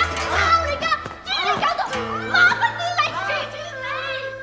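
High-pitched voices shouting and crying out in short, gliding exclamations, over background music with held notes.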